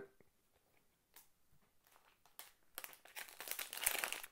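A trading-card pack's wrapper crinkling as it is handled and torn open: a few faint clicks at first, then dense crinkling in the last second or so.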